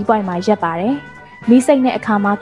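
A voice speaking in drawn-out syllables with swooping falling and rising pitch, over background music.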